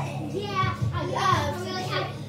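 Young girls' voices singing and calling out over recorded music playing underneath.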